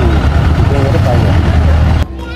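Engine of a small truck running close by, a steady low rumble, with people's voices in the background.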